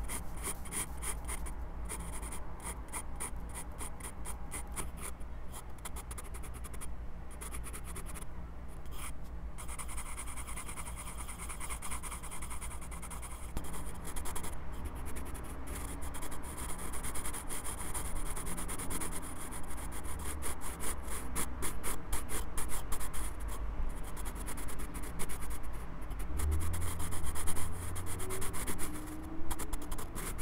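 Graphite pencil scratching on sketchbook paper in quick, short strokes, heard very close through a lavalier microphone clipped to the pencil itself. The strokes grow louder toward the end, with a brief low thud near the end.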